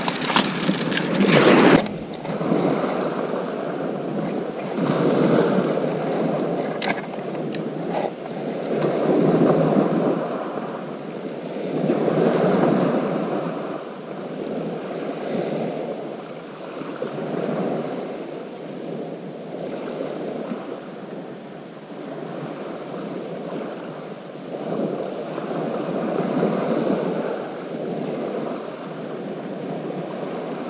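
Small waves breaking and washing over a shingle beach, swelling and fading every few seconds, louder for the first two seconds.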